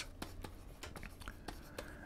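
Stylus on a drawing tablet writing letters: faint scratching with a few light taps as the strokes go down.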